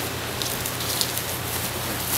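Steady hiss of outdoor background noise with a low hum under it, broken by a couple of faint ticks.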